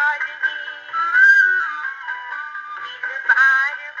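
Wind-up gramophone playing an old 78 record of a film song, a gliding, held melody line with accompaniment. It sounds thin, with no deep bass and no high treble.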